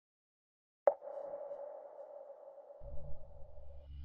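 Intro music: a single bell-like struck tone about a second in that keeps ringing, joined near three seconds by a low droning pad.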